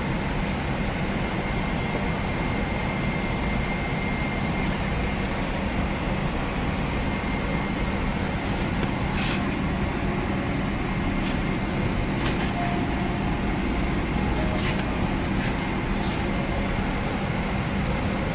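Steady rushing air and low hum of a Boeing 777-300ER's cabin ventilation while the aircraft waits to depart, with a faint thin whine running through it. A few short paper rustles come from a seat-guide booklet being handled.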